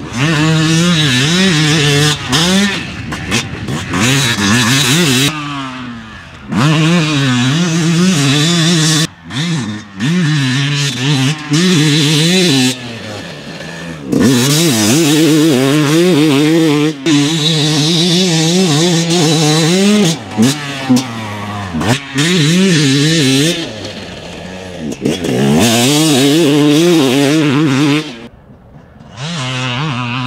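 2020 Yamaha YZ250 single-cylinder two-stroke dirt bike engine revving hard under load. Its pitch rises and falls with the throttle, with several brief drops where the throttle is shut off. It goes quieter near the end as the bike moves away.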